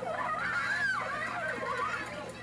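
Film soundtrack of children's voices calling and shouting, high-pitched and rising and falling.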